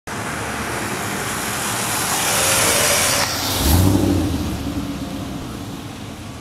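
Street-racing cars going past at speed: a rush of noise that builds, then a deep engine note that swells as they go by about three and a half seconds in and fades away.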